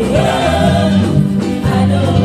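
Loud gospel music: voices singing over a band, with held bass notes that change every half second or so.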